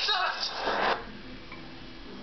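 A person's voice, ending in a short breathy rush of noise about half a second in, then cutting off to a faint steady hum.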